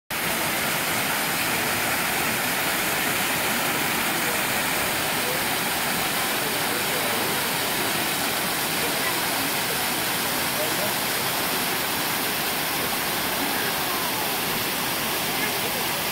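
Steady rushing of water cascading over rocks at the lower Amicalola Falls, an even, unbroken roar.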